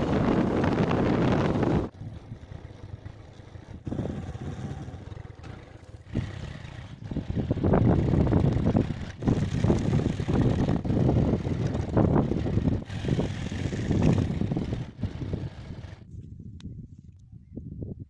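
Wind rushing over the microphone of a moving motorcycle, loudest for the first two seconds, then gusty wind buffeting the microphone in uneven surges.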